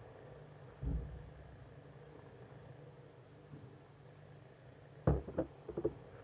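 Quiet room tone while beer is sipped from a stemmed glass, with a soft low thump about a second in. Near the end comes a short cluster of knocks as the glass is set down on the countertop.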